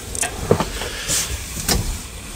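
Handling noise from a handheld camera carried through an aluminum boat's cabin: rustling with a sharp knock about half a second in and another near the end.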